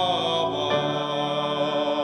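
Male classical singer singing a long held note in full voice, moving to a new held note about two-thirds of a second in.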